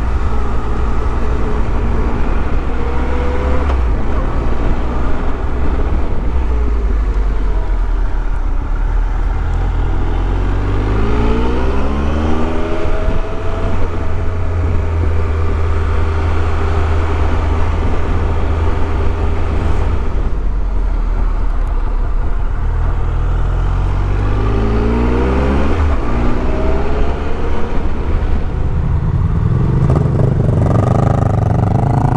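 Motorcycle engine heard from on board, under a steady rumble of wind on the microphone. The engine's pitch climbs twice, about ten seconds in and again near twenty-five seconds in, as the bike accelerates up through its revs.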